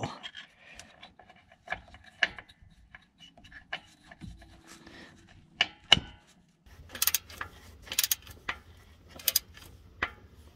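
Metal parts of a Honda Pioneer 700's oil filter housing being fitted back together by hand, with light scattered clicks and scrapes. From about seven seconds in, a socket ratchet clicks in short bursts about once a second as the housing bolts are run in.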